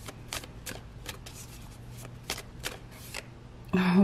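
Tarot deck being shuffled by hand: a run of quick, irregular card flicks that stops a little after three seconds in. A woman starts speaking just before the end.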